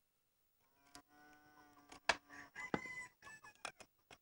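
Faint farmyard animal calls: one drawn-out call lasting about a second and a half, then shorter, higher calls, mixed with several sharp clicks or knocks. These start about a second in and stop just before the end.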